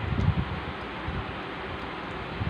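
Steady background hiss, with a few soft low bumps in the first half second from a hand handling plastic action figures close to the microphone.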